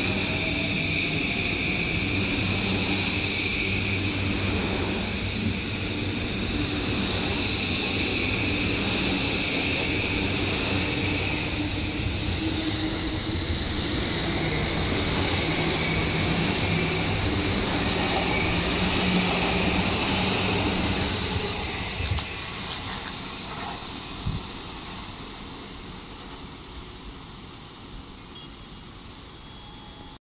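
JR East E235 series 1000 electric train pulling out of the station: the motor whine rises in pitch early on over the steady noise of the wheels on the rails. The sound fades away over the last several seconds as the train leaves.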